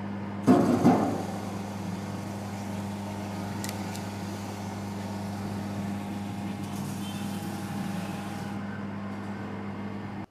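Small electric sugarcane juicer running with a steady hum. About half a second in, a loud burst lasting around half a second as a sugarcane stalk is fed in and crushed.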